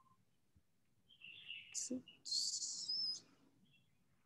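A bird chirping: a few short, high chirps between about one and three seconds in, the last the loudest and nearly a second long, with a thin, slightly rising tone.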